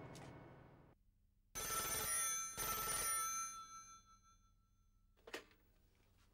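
Telephone bell ringing: one ring of about two seconds in two quick bursts, its metallic tones dying away over the next second or so. A single short click follows near the end.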